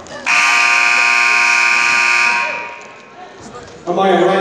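Gym scoreboard buzzer sounding one steady, loud electric buzz for about two seconds, then fading out.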